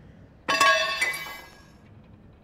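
Glass clinking twice, a sharp chink about half a second in and another about a second in, each ringing on briefly before fading out.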